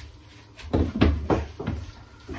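Meat mallet pounding a chicken breast in a plastic food bag on a wooden chopping board to flatten it: about four thuds in the second half, growing weaker.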